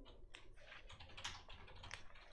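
Faint, irregular keystrokes on a laptop keyboard as the motion's wording is typed up.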